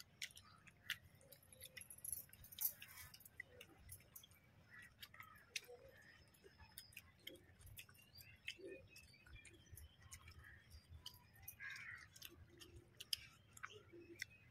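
Faint eating sounds of rice and fried pieces eaten by hand from a banana leaf: soft chewing and lip smacks with many small scattered clicks throughout.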